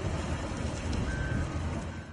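Wheel loader's diesel engine running as the machine drives up a gravel embankment, a steady low rumble with one short high beep about a second in.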